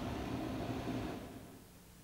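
Precision dicing saw running, a steady machine noise that fades away about a second and a half in, leaving only faint hiss.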